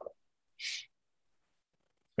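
A person's short, breathy intake of breath about half a second in, against near silence.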